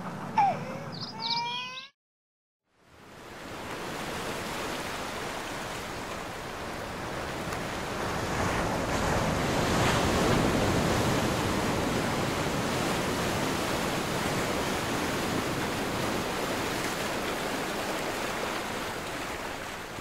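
A baby's cry trails off in the first two seconds. After a moment of silence, a steady rush of sea waves fades in and swells to its fullest about ten seconds in.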